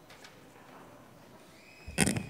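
Faint room tone of a quiet church, then just before the end a sudden loud knock with a short high ringing tone after it, from the lectern microphone being handled as the lector gets ready to speak.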